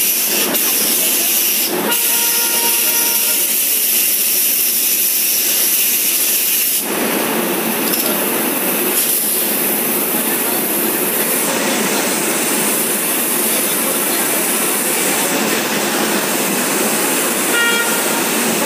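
Passenger coaches of a departing train rolling past close by: a steady rushing hiss of wheels on rail that grows fuller about seven seconds in as the train picks up speed.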